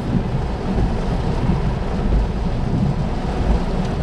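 Heavy rain drumming steadily on a car's windshield, heard from inside the cabin, with a deep low rumble underneath.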